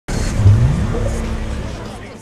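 TV programme title sting: a sudden loud hit with a low sweep that rises in pitch over the first second, then fades away.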